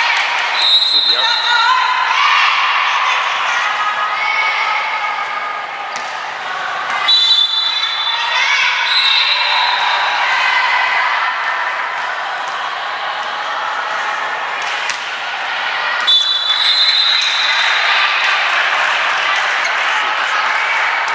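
Referee's whistle blowing short two-tone blasts near the start, about seven to nine seconds in, and about sixteen seconds in, marking the end and start of volleyball rallies. Between them, players and spectators shout and call, and the ball is struck.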